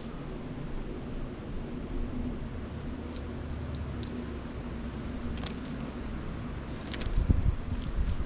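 Coins clinking in the hand as change is sorted out to pay a vending machine: light metallic clicks, scattered irregularly over several seconds, over a steady low rumble. A louder dull bump comes about seven seconds in.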